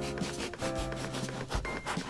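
A kitchen knife sawing through a loaf of Japanese white sandwich bread (shokupan) in several short back-and-forth strokes, cutting off a thin slice.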